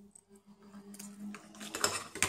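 Steel scissors being handled: small metallic clicks and snips, then a louder clatter near the end as they are set down on the workbench, over a faint steady hum.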